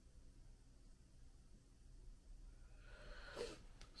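Near silence: room tone with a faint low hum, and a brief soft noise shortly before the end.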